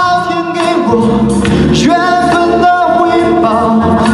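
A man singing a Chinese pop song into a stage microphone through the PA, holding long notes that bend between pitches.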